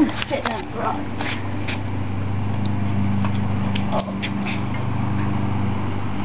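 Automatic garage door opener running as the door closes: a steady motor hum with scattered clicks from the door mechanism.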